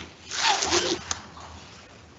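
A short burst of rustling with a voice mixed in, about half a second long, then a single sharp click; the sound of people moving about in the chamber as the sitting ends.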